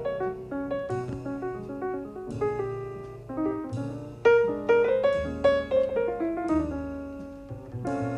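Jazz piano solo on a grand piano: a steady stream of single notes and chords, with a double bass plucked low underneath.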